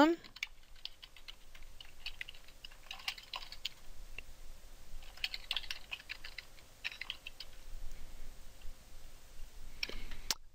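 Typing on a computer keyboard: several short bursts of key clicks with brief pauses between them, as words are keyed in and tab is pressed to move to the next cell.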